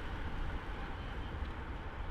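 Steady low outdoor rumble with a light hiss, with no distinct events.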